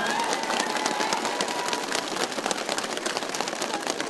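Audience applauding as a live song ends: a dense clatter of many hands clapping.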